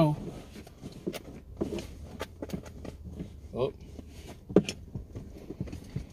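Scattered short clicks and rustles of someone rummaging by hand for a paper receipt inside a car, over a faint low hum.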